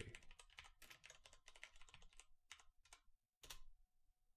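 Faint typing on a computer keyboard: a quick run of keystrokes for about two seconds, then a few scattered keystrokes.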